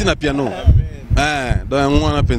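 Men's voices talking into a handheld microphone, with a couple of long drawn-out vowels about a second in, over repeated low thumps on the microphone.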